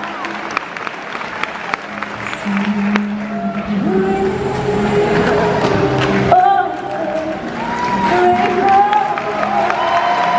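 Live orchestral music at a concert, heard from among the audience. Scattered clapping in the first couple of seconds gives way to held low notes and then a melody, with the music growing a little louder.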